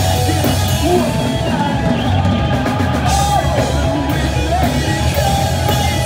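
Rock band playing live: electric guitars over bass and a drum kit, loud and dense. The cymbals drop out for about a second and a half near the middle, then come back in.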